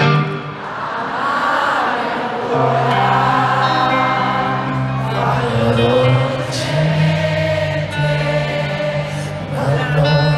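Live arena concert music recorded from the stands: sustained low guitar notes under singing in which many voices seem to join together.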